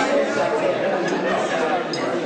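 Many people chattering at once in a large hall, a steady din of overlapping voices from diners at their tables, with a few faint light clicks.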